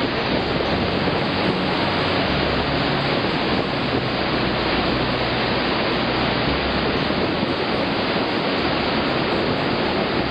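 Iguazu Falls: a great mass of water plunging over the rim into a deep chasm, heard as a loud, steady, even rush of noise.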